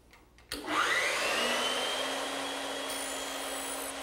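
A bandsaw switched on: a click, then a motor whine that rises in pitch over about a second and a half as it spins up to speed and then runs steadily.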